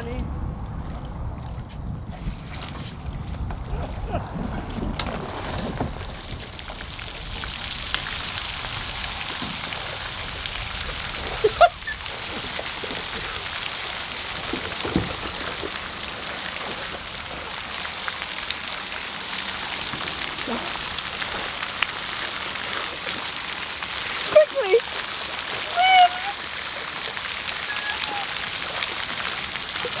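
Floating pond fountain spraying: starting several seconds in, a steady hiss of water falling back onto the pond surface, with a few short vocal cries over it.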